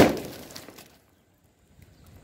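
A homemade sulphur-potash pipe gun going off with one sharp, loud bang, blasting a watermelon apart; the burst and scattering pieces die away over about a second and the sound then cuts off suddenly.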